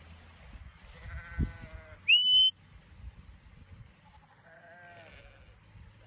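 Sheep bleating twice, and between the bleats one short, loud, high shepherd's whistle that slides up and then holds: a handler's whistle command to a working sheepdog.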